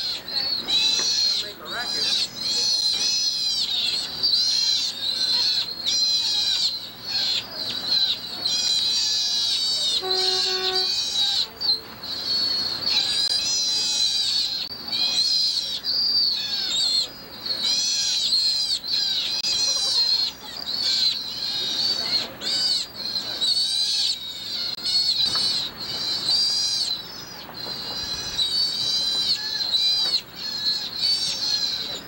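Sea otters squealing over and over: high-pitched, whistling calls that rise and fall in pitch, almost without a break. A short low steady tone sounds for about a second around a third of the way in.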